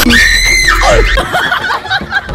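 A young man's loud, high-pitched scream, held briefly and then falling in pitch about a second in: a comic yelp of pain at an injection.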